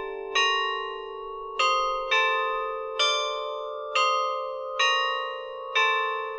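Bell-like chimes playing a slow melody: seven struck notes in turn, about one a second, each ringing on under the next.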